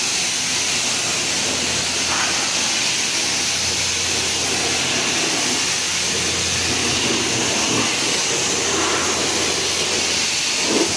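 High-pressure car-wash wand spraying water against a pickup truck's body panels and tyre: a steady, loud hiss with a faint low hum underneath.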